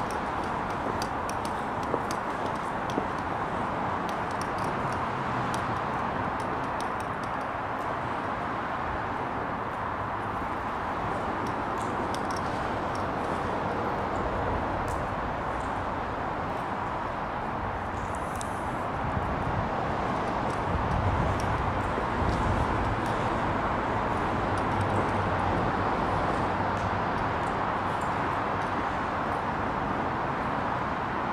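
Steady roar of traffic tyres and engines on the A40 dual carriageway overhead, heard from underneath the concrete viaduct. A deeper rumble swells for a few seconds about two-thirds of the way through. Footsteps scuff on the dirt ground as small scattered ticks.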